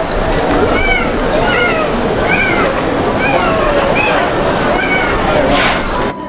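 Short high-pitched cries, each rising then falling in pitch, repeated about once or twice a second over a dense rush of background noise, with a brief burst of noise near the end.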